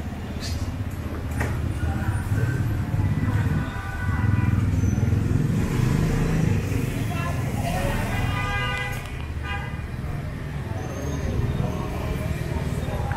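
Street traffic of motorbikes, a steady low rumble of engines, with people talking nearby.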